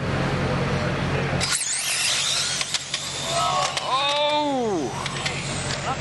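Electric 1/10-scale RC drag car launching about a second and a half in: a sudden burst of high motor whine and tyre noise as it runs down the track. Around four seconds in, a pitched sound swells and then drops steeply in pitch.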